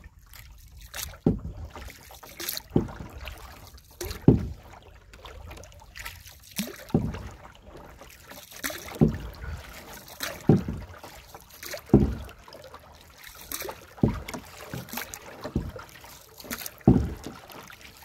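Paddle strokes from a small plastic rowing boat (sampan) being paddled by hand. A sharp splash and knock comes about every one and a half seconds, with water lapping and trickling in between.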